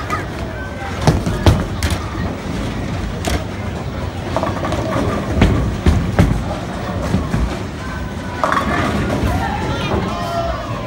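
Bowling alley din: a low rumble of balls rolling down the lanes, with sharp clatters of pins being struck several times, and background voices.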